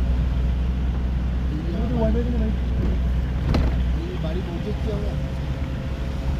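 Low, steady rumble of a car heard from inside the cabin while driving on a snowy road, growing uneven about four seconds in, with a single sharp click about three and a half seconds in.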